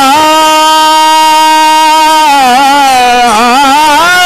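Devotional kirtan singing: a single voice holds one long steady note for about two seconds, then moves through wavering, ornamented turns with dips in pitch.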